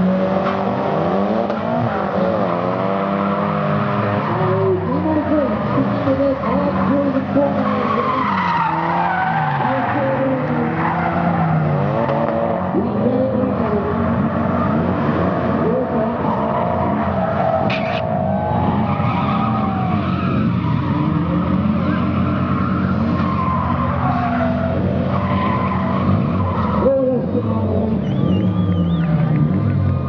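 Drift cars sliding in a run: the engines rev up and down again and again at high revs, with tyres squealing and skidding on the tarmac.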